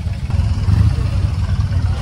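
A motorcycle engine idling nearby: a steady low rumble that grows louder about half a second in.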